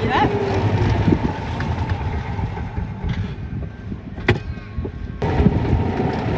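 Golf buggy driving along, a steady low rumble of its motor and tyres, with a sharp knock about four seconds in.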